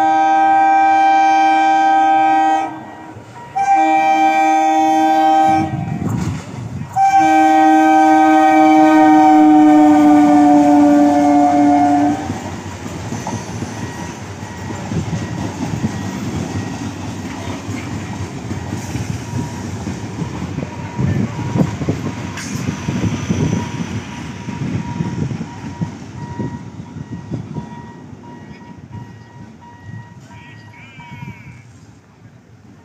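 Electric multiple-unit local train sounding its horn in three loud blasts, the third the longest and sinking slightly in pitch at its end. The coaches then run past with a rumble and clickety-clack of wheels over rail joints, which fades near the end.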